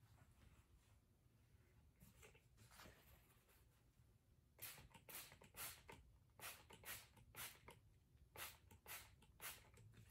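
Hand-pumped trigger spray bottle spraying a paper towel: faint room tone, then about a dozen quick, faint squirts in irregular succession through the second half.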